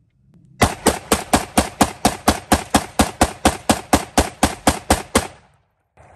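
AR-10 style .308 semi-automatic rifle fired rapidly, about twenty shots at four to five a second, starting about half a second in and stopping after about five seconds. The shots come in one even, unbroken string with no stoppage: the rifle cycles steel-case Tula ammo without jamming.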